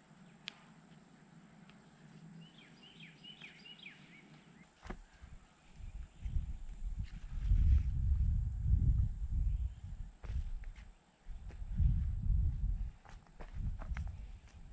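Wind gusting on the microphone in low rumbles that come and go from about five seconds in. Before that, a few short bird chirps.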